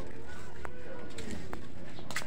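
A bird cooing low, with two short sharp clicks about a second apart.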